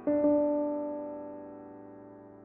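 Ivory virtual grand piano, a sampled piano played from a keyboard controller: a chord struck at the start, with another note added a moment later, held and slowly fading.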